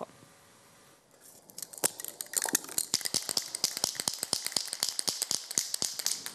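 Aerosol spray-paint can being worked: after a second of near silence, a quick run of rattling clicks, about eight a second, over a high hiss.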